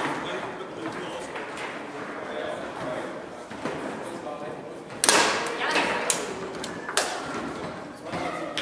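Foosball table in play: ball and rod knocks, with a loud sharp strike about five seconds in and several more sharp clacks over the next two seconds, against background voices in a large hall.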